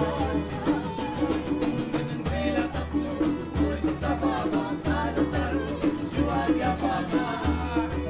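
Live acoustic folk band playing: a bowed violin, a strummed acoustic guitar and a hand drum keep a steady beat while several voices sing together.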